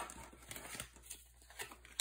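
Playing cards being drawn and laid down on a wooden tabletop: faint scattered taps and slides, with a sharper tap near the end.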